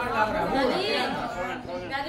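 Several people talking at once in low, overlapping chatter, with no single clear voice.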